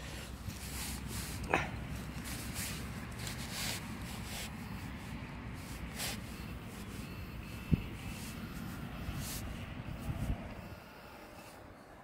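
Low rustling and handling noise of a dug clump of soil and turf being searched by hand, with a few soft knocks. The steady rumble drops away about ten and a half seconds in.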